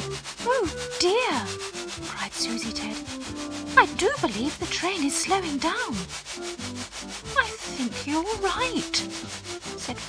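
Steam-train sound effect chuffing in an even rhythm, under a quiet music bed of held notes. Clusters of pitched tones swoop up and down about a second in, from about four to six seconds in, and again near the end.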